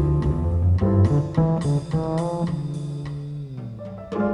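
Live jazz trio passage: acoustic piano and plucked upright double bass playing an instrumental stretch, with a low note sliding down near the end.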